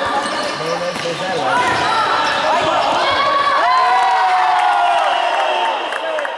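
Voices shouting and cheering, echoing in an indoor sports hall during a youth futsal match. A little past halfway one long, drawn-out shout is held for nearly two seconds, the cheer for a goal.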